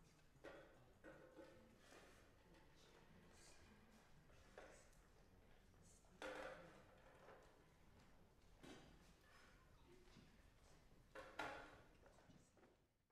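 Near silence with a handful of faint, irregular clunks and knocks as metal music stands are moved and adjusted on the stage.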